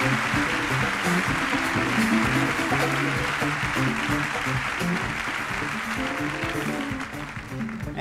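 Audience applauding over a live band playing a steady, rhythmic backing groove; the applause dies away near the end while the music carries on.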